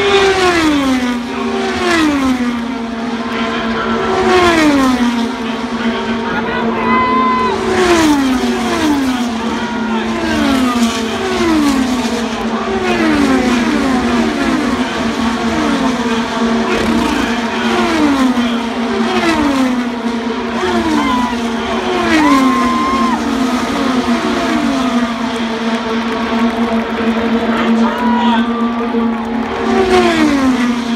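IndyCar race cars' 2.2-litre twin-turbocharged V6 engines at racing speed passing one after another through the turn. Each engine note drops in pitch as the car goes by, with a new pass every one to two seconds and several in quick succession in the middle.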